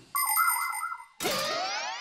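Cartoon transition sound effect: a warbling electronic tone for most of a second, a short break, then a tone gliding upward in pitch.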